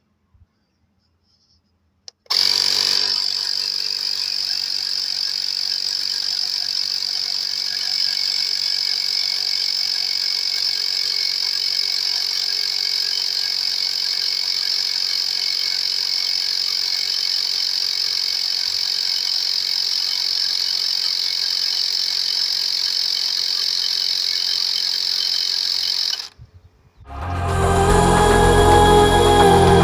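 CYCPLUS cordless electric tyre inflator pumping up a tyre, its small compressor running as a steady high-pitched buzz while the pressure rises from about 20 to 30 psi. It starts about two seconds in and cuts off a couple of seconds before the end.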